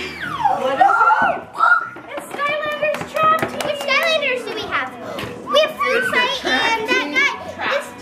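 Several children's high-pitched voices squealing and chattering excitedly over one another, without clear words, with light clicks and rustles of handling a gift box.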